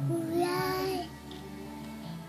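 A toddler sings one drawn-out, wavering note for about a second over background music. Then only the music carries on, quieter.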